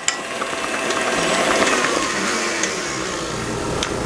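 KitchenAid stand mixer running steadily, its flat beater turning through cake batter: a continuous motor and gear sound.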